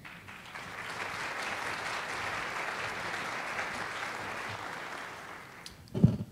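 Audience applauding, building up within the first second and fading out near the end.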